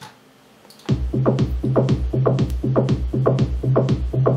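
A sequenced electronic kick drum and short synth bass notes, played from MIDI-driven hardware synthesizers, start looping in a steady rhythm about a second in.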